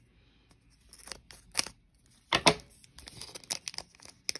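Foil trading-card pack wrapper crinkling and being torn open by hand: a few separate sharp rips, the loudest about halfway through, then a quick run of small crackles near the end.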